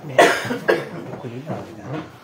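A person coughing twice in quick succession, with low voices talking in the room afterwards.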